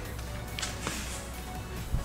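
Background electronic music with a steady low bass, and a single sharp click near the end.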